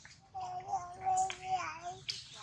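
Infant long-tailed macaque giving one long, steady, whimpering coo that wavers slightly and drops in pitch at the end.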